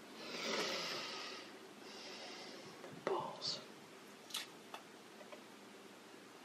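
A long, breathy exhale and a shorter, fainter second breath, then a few faint clicks and crinkles from fingernails picking at the edge of an adhesive second-skin film laid over a fresh tattoo.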